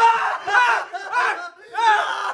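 Young men yelling and screaming in fright at a jump-scare, about four loud cries in quick succession.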